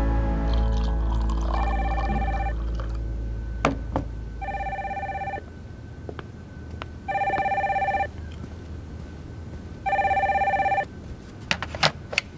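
A telephone ringing four times, each ring lasting about a second with a short pause between, while background music fades out under the first two rings. A few sharp clicks come near the end as the handset is picked up.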